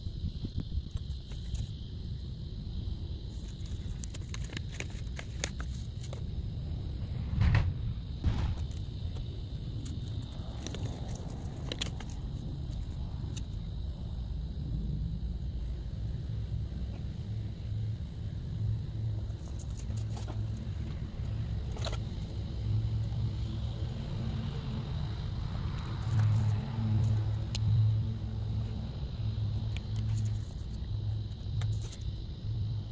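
Low steady rumble of a motor or engine, becoming a pulsing hum from about halfway. A few light clicks and knocks come from plastic seed trays, seed packets and a marker being handled.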